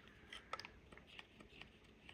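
Near silence with a few faint, small clicks of a hard plastic gear-selector housing being handled.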